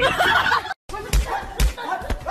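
Slaps and thumps of a cat and a dog sparring with their paws, a few sharp hits with two heavier thuds, following a voice that cuts off just before.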